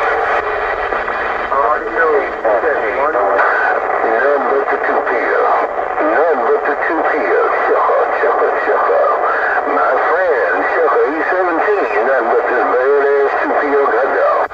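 Cobra 148GTL CB radio receiving on AM channel 6 (27.025 MHz): several stations talking over one another at once, a loud, thin-sounding jumble of voices with no clear words.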